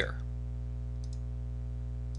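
A computer mouse button clicked once about a second in, a faint, quick press and release, over a steady low hum.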